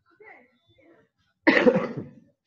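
A person coughing once, short and loud, about one and a half seconds in, after some faint murmuring.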